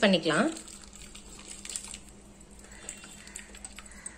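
A voice for the first half second, then faint scattered clinks and light handling sounds as boiled sweet corn kernels are tipped from a steel bowl into strained chicken stock.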